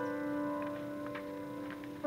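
Piano chord held and slowly fading in a ballad intro, with a few faint light ticks in the middle.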